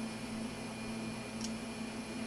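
Steady low electrical hum with a background hiss, and a single faint click about one and a half seconds in.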